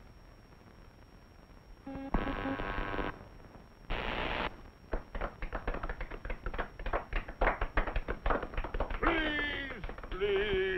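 Cartoon soundtrack effects: a short buzzy blast about two seconds in and another burst near four seconds. Then comes a quick, uneven run of taps and clicks for about four seconds, ending in a falling, voice-like call.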